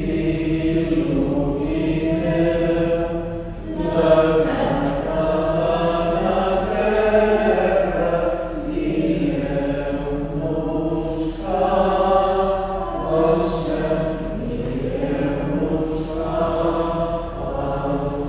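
Several voices singing a slow sacred chant in held phrases a few seconds long, with short breaks between them.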